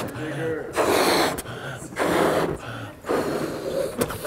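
A man blowing up a rubber balloon by mouth: about four forceful puffs of breath into it, with gasping breaths taken in between.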